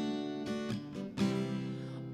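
Acoustic guitar strummed by hand: three chord strums about half a second, three quarters of a second and just over a second in, each left ringing.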